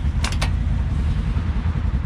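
Sheet-metal UTV lower door latch clicking three or four times in quick succession about a quarter second in as the door is unlatched and swung open, over a steady low rumble.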